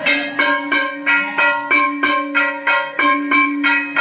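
Temple aarti music: bells struck in a rapid, even rhythm of about three strikes a second over a steady held tone.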